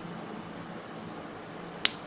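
A single sharp click near the end, a marker tapped against a whiteboard, over a steady background hiss.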